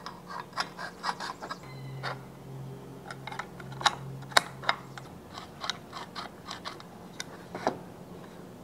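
Small steel parts of an antique mortise lockset clicking and clinking against each other and the lock case as they are handled, a dozen or so sharp clicks spread irregularly through. A low steady hum runs underneath for about three seconds in the middle.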